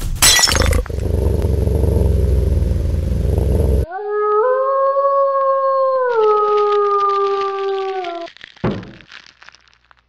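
Intro sound effect: a sharp crash, a low rumble for about three seconds, then a single long wolf howl that rises at its start, drops in pitch about two seconds later and breaks off near eight seconds.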